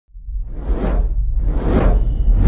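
Two swelling whoosh sound effects about a second apart, each rising and fading, over a deep low rumble: the sound design of an animated logo intro.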